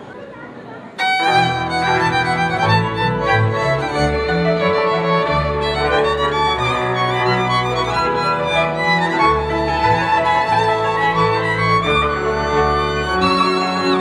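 A Moravian cimbalom band of two violins, cimbalom and double bass plays a folk tune, starting abruptly about a second in.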